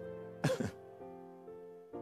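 Soft background music of steady sustained notes, with a man's brief throat-clear about half a second in.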